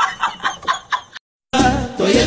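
A fast cackling laugh: a string of short high pitched notes, about seven a second, fading out after about a second. It breaks off into a brief silence, and music starts near the end.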